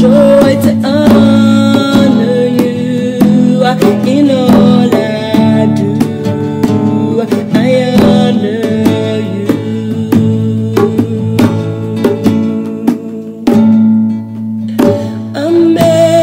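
Gospel worship song: a voice singing over guitar and drums.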